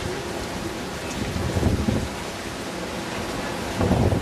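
Wind rumbling on the camera microphone over a steady outdoor hiss, with stronger gusts about one and a half to two seconds in and again at the end.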